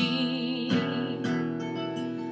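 Acoustic guitar strummed, a few chord strokes ringing on, with a faint held wordless vocal note over it.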